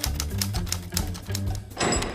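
Title-card music sting: a bass line under a quick, irregular run of typewriter key clacks, with a short rushing swish near the end.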